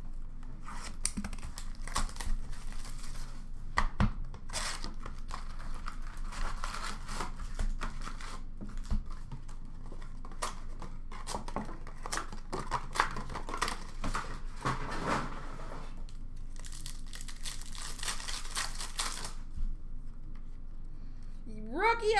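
Hockey card packs being torn open, their wrappers crinkling, among irregular clicks and rustles of the cardboard retail box and cards being handled. A longer, denser stretch of tearing and rustling comes about three-quarters of the way through.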